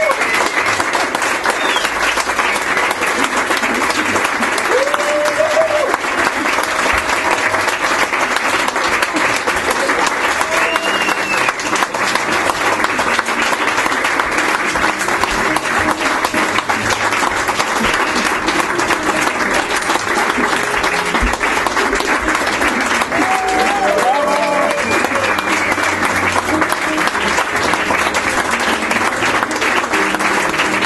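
Audience applauding steadily throughout, with a few voices calling out now and then.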